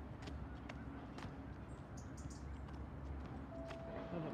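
Footsteps walking along a station platform, a few faint, irregular steps over a steady low rumble.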